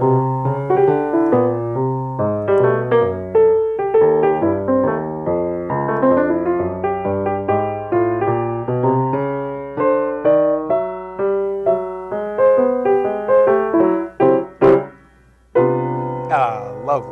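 A 1936 Steinway Model M grand piano, fitted with newer Steinway hammers and freshly voiced and regulated, played in a flowing run of chords and melody centred in the middle of the keyboard. Near the end the playing stops briefly with a single knock, then starts again.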